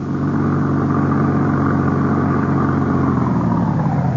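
Sound effect of a jeep engine running steadily.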